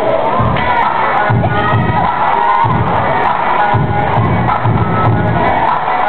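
Loud music with heavy bass played over a sound system, with a crowd cheering and shouting over it.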